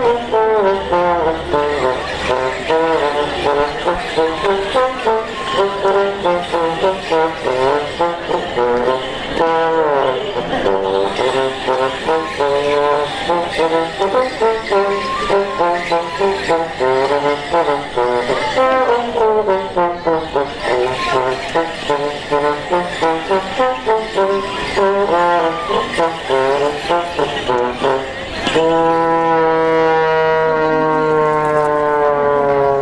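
Morris dance tune played on a melody instrument, a run of notes with a regular beat, with the jingle of the dancers' leg bells. Near the end the music settles on a long held chord over a low bass note.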